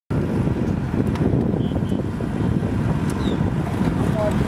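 Wind buffeting the microphone: a steady, dense low rumble, with a few faint short high chirps about halfway through.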